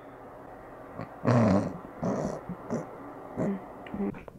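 A short, loud vocal sound about a second in, with a low, rough pitch, followed by laughing.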